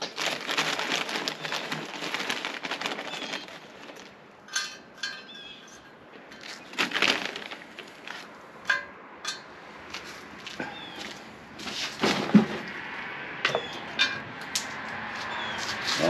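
Dry wood chips (a mix of mesquite, hickory, apple and maple) rustling and crackling as they are scooped by hand from crinkly bags into a smoker's metal chip-loader tube. A dense rustle for the first three seconds or so, then scattered clicks and short crackles.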